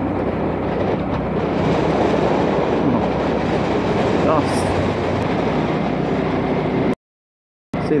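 Wind rushing over the helmet-mounted microphone at highway cruising speed, with the Hyosung GV650's V-twin engine running low underneath. The sound drops out completely for a moment about seven seconds in.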